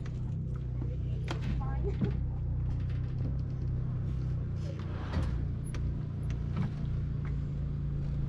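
A motor vehicle engine idling steadily, with a few scattered clicks and knocks as a dirt bike is pushed up a metal ramp into a pickup bed.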